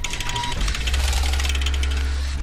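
Sound design under an animated title card: fast, even ticking with a deep bass tone that comes in about half a second in.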